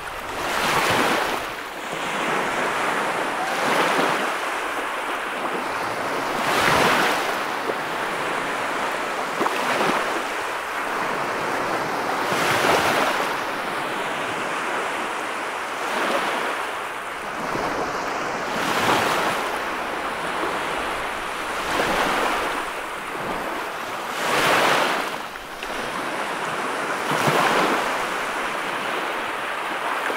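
Ocean surf breaking on a beach: a continuous rush of foaming water that swells about every three seconds as each wave crashes and washes up the sand.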